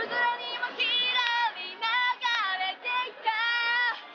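Teenage girl vocals singing a pop melody, with several held notes and a longer sustained note near the end.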